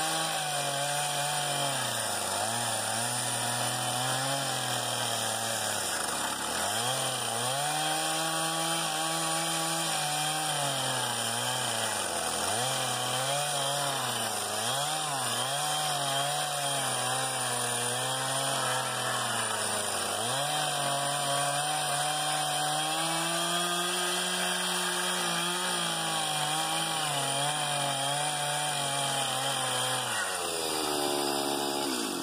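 Chainsaw cutting lengthwise along a log to rip out a board, running at high speed, its pitch dropping sharply several times as it bogs under load, most deeply about six and twelve seconds in.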